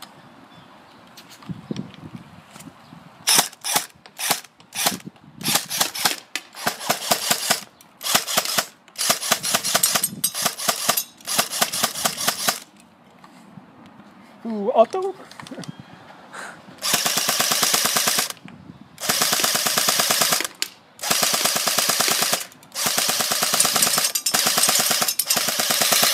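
Airsoft SCAR-H replica firing full-auto: a run of short bursts of rapid shots, then, after a pause of a few seconds, longer bursts lasting a second or two each.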